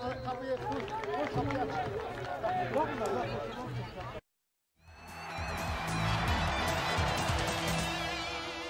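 Several overlapping voices from the pitch and stands for about four seconds. Then the sound cuts to a half-second of silence, and a TV programme bumper jingle starts with a rising sweep and held tones.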